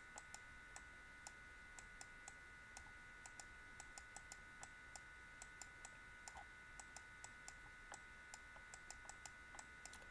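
Faint, irregular clicking, a few clicks a second, of a computer mouse as handwriting is drawn on screen, over a faint steady electrical whine.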